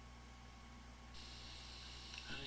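Near silence: a steady low electrical hum under faint hiss, the hiss growing brighter about a second in.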